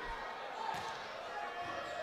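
Background murmur of the crowd in a large sports hall. A volleyball is struck once, faintly, less than a second in.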